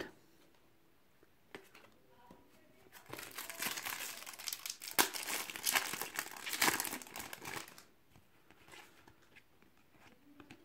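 Foil trading-card sachet being torn open and crinkled by hand. The crackling starts about three seconds in and runs for about five seconds.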